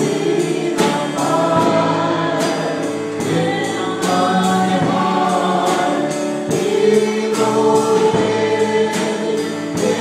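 A small church praise team singing a worship song in several voice parts, over accompaniment with a steady beat.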